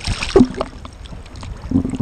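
Sea water splashing and lapping against a camera held at the surface by a swimmer, with a sharp splash at the start. A short vocal sound from the swimmer comes about half a second in.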